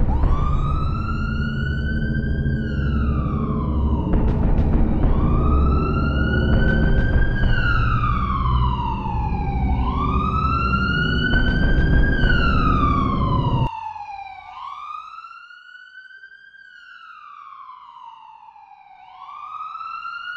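Emergency-vehicle siren in a slow wail, rising quickly and falling slowly about every five seconds. Under it a loud low rumble runs until it cuts off abruptly about two-thirds of the way through, leaving the siren alone and quieter.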